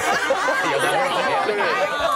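Only speech: several people talking over one another in lively chatter.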